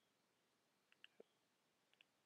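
Near silence: faint room tone with a few soft button clicks. Two come close together about a second in, a duller knock follows just after, and one more click comes near the end.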